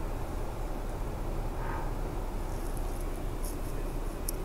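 Steady low rumble of vehicle engines idling in traffic, heard from inside a car's cabin, with a few faint high ticks in the second half.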